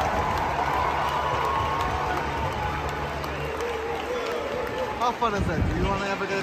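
Large stadium crowd cheering and applauding as the seventh-inning-stretch singalong ends, with a low held tone underneath that stops about two-thirds of the way through. Near the end a close voice breaks in over the crowd.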